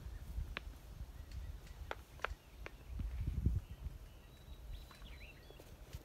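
Person moving about a soil garden bed: low rumble and light scuffing of footsteps and handling, with a few short sharp clicks and a heavier scuff about three seconds in.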